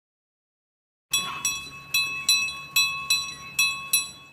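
A bright bell-like chime jingle, starting about a second in: about eight struck notes in quick, uneven succession, each ringing briefly.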